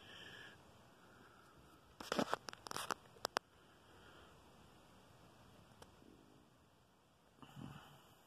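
Handling noise from a handheld camera being moved in close: a quick cluster of four or five sharp clicks and knocks about two to three and a half seconds in, over faint room tone.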